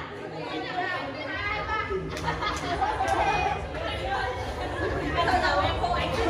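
Overlapping chatter of several people in a large, echoing hall, with a few sharp smacks about two to three seconds in.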